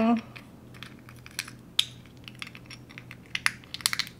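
Scattered light plastic clicks and taps as a small jar of nail gems and other small tools are handled and set down on the table, with a quick cluster of clicks near the end.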